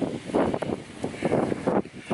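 Strong, gusty wind buffeting the microphone, an uneven rough noise that rises and falls.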